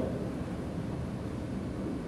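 Room tone: a steady low hum with a faint hiss and no distinct events.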